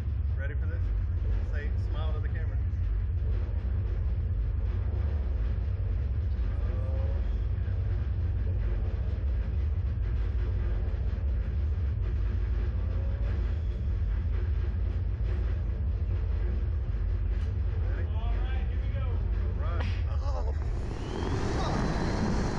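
Steady low rumble with faint voices in the background while the slingshot ride's capsule sits waiting. Near the end comes a sudden loud rush of wind over the microphone as the capsule is launched upward.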